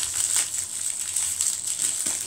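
Crinkly wrapper of an LOL Surprise doll being torn open and crumpled by hand: a dense, continuous run of crackles and rustles.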